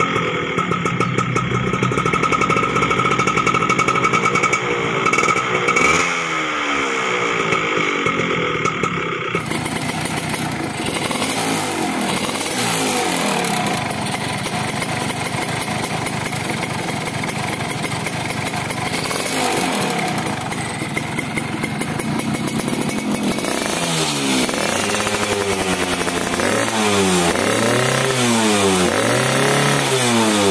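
Yamaha F1ZR's two-stroke single-cylinder engine running through aftermarket racing exhausts, held around idle with the throttle blipped so the revs rise and fall. The exhaust note changes abruptly about nine seconds in, and the revving comes in quick repeated blips near the end.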